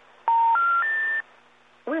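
Telephone Special Information Tone (SIT): three steady beeps rising in pitch, each about a third of a second, heard over a phone line. It is the signal that the call cannot be completed, played ahead of a 'number not in service' intercept recording.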